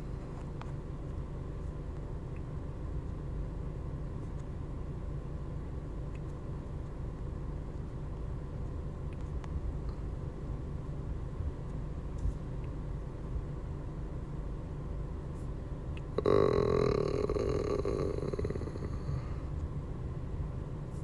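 Steady low background hum. Near the end, a louder hissing noise lasts about three seconds and then fades.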